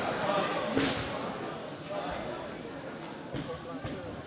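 Unclear chatter of several voices in a large, echoing hall, with a few sharp knocks, the loudest about a second in, and the sound slowly fading.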